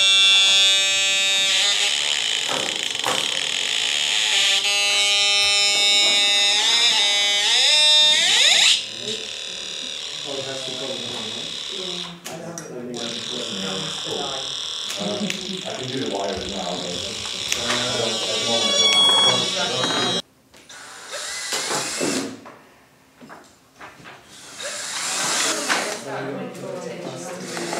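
Homemade Atari Punk Console, a 555-timer square-wave noise synth, sounding a loud, harsh buzzing tone that holds steady and then steps up in pitch a few times before cutting off about nine seconds in. After that, people talk in the room, with a few short noisy bursts near the end.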